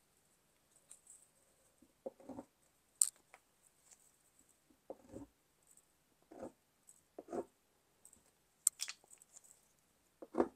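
Stabilo Woodies crayons handled in one hand, knocking and clicking against each other in short, separate taps, with two sharper clicks about three seconds in and near the end.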